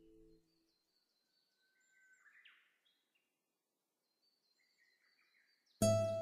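Faint birdsong, short chirps and trills, in a near-silent gap between pieces of relaxation music. A low held tone fades out just after the start, and near the end a loud plucked guitar note sets in and rings down.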